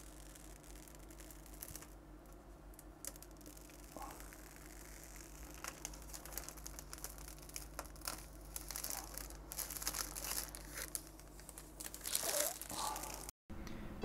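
Protective plastic film being peeled off a PC case's tempered-glass side panel: faint crackling and crinkling of the plastic sheet that grows louder and busier in the second half, over a steady low hum.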